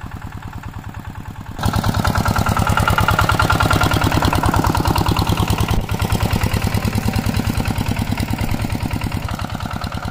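Kubota SV140 single-cylinder diesel engine of a two-wheel walking tractor running steadily with a regular quick thudding beat as it pulls a trailer across a field. The engine grows much louder about a second and a half in and drops back near the end.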